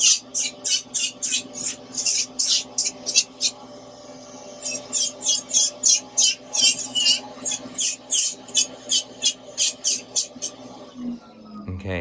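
Electric podiatry rotary file sanding thick psoriatic callus on the sole of a foot: a steady motor whine with rapid rasping strokes about four a second as the burr is passed over the skin. It pauses briefly about a third of the way in, then stops shortly before the end.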